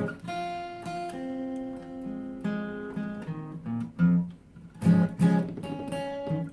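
Steel-string acoustic guitar being played solo: picked notes and chords left to ring and change every second or so, with a few sharper strums about four and five seconds in.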